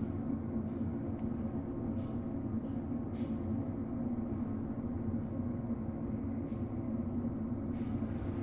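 Steady low background hum of room noise, with a few faint ticks.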